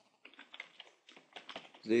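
Typing on a computer keyboard: a quick run of light key clicks as a word is typed.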